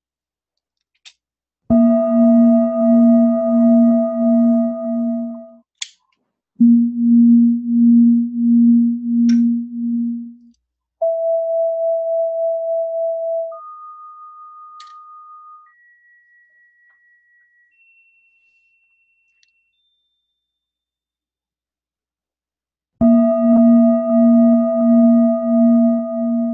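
Recorded Himalayan singing bowl ringing after a strike, its low tone pulsing slowly with several higher tones above it. Its harmonics then sound one at a time as single steady tones, stepping up in pitch and growing fainter, until they are barely audible. After a few seconds of silence the full ringing sound returns near the end.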